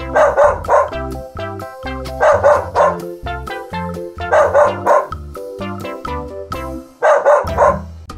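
A dog barking in four rounds of about three quick barks each, roughly every two seconds, over steady light background music.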